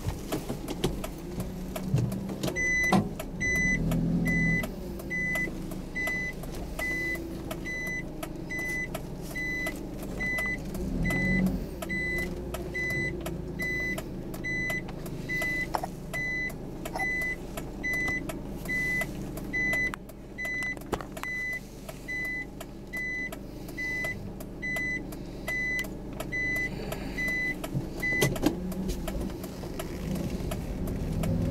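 Motor vehicle running, a steady low rumble with a few bumps, while a high electronic beep repeats a little more than once a second from about three seconds in until near the end.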